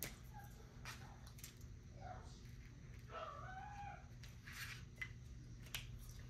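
Faint rustling and light clicks of paper dollar bills being handled, with a brief faint wavering pitched sound in the middle, over a low steady hum.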